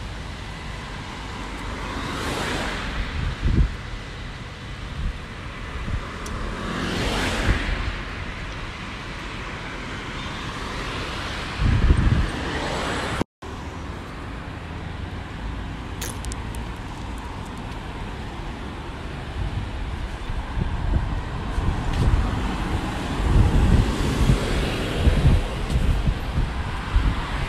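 City street traffic: cars passing on a multi-lane road, two of them going by close about two and seven seconds in. The sound drops out for an instant near the middle.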